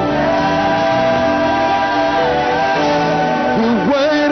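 Gospel worship song with voices holding long, steady notes over a live band.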